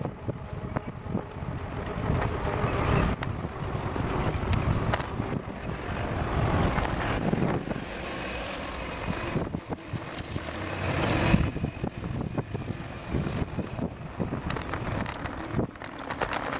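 Wind buffeting the microphone of a handlebar-mounted camera on a moving bicycle, mixed with road noise and motor vehicles passing close by; the loudest swell comes about two-thirds of the way through, with a few scattered knocks.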